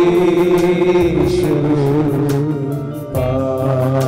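A hymn sung slowly with long held notes over a steady instrumental bass accompaniment.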